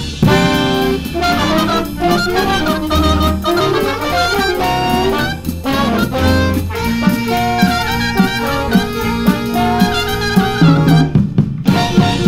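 A jazz band playing a swing-style tune, with saxophones, trumpet and trombone over a drum kit. The band cuts out for a moment near the end, then comes back in.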